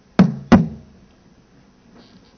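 Two sharp knocks in quick succession, about a third of a second apart, each followed by a short low ring.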